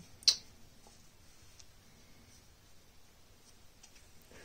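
One sharp, loud click about a third of a second in, then a few faint small clicks over quiet room tone.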